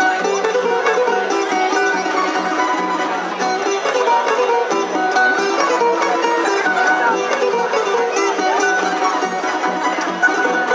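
A Serbian tamburica orchestra playing: small prim tamburicas and larger tamburicas pluck a busy, continuous melody over a double bass (berde), at an even level throughout.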